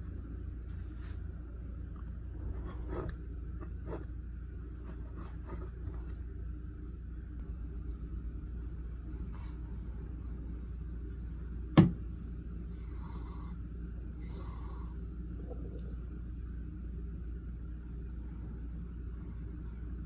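Faint scratching of a gold flex fountain-pen nib drawing strokes across paper, over a steady low hum. One sharp click stands out a little past the middle.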